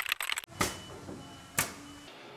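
Title-animation sound effects: a quick burst of keyboard-typing clicks, then two sharp hits about a second apart.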